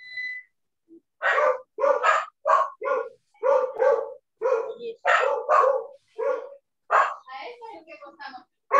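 A dog barking over and over, about two short barks a second, picked up through a call participant's microphone. A brief high beep sounds just before the barking starts.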